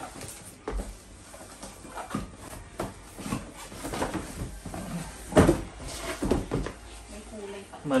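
Handling noise of a smart bike trainer being pulled out of its cardboard box: cardboard rustling and a run of irregular knocks and bumps of the unit against the box, the loudest about five and a half seconds in.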